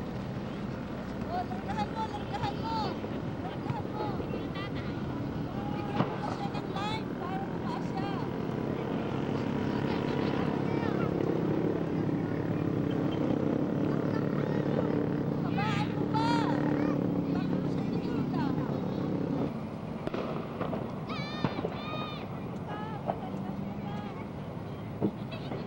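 Outdoor background voices, with a steady engine drone that builds up about nine seconds in and drops away about twenty seconds in.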